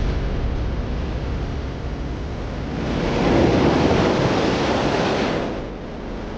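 Fast, churning river water rushing, swelling louder about three seconds in and easing off near the end.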